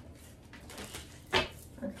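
Tarot cards being handled, quiet apart from one short, sharp snap of the cards about a second and a half in.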